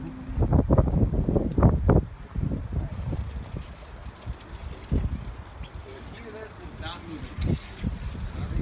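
Wind buffeting the phone's microphone while riding a pedal bike, as uneven low rumbles that are heaviest in the first two seconds. Indistinct voices come in faintly now and then.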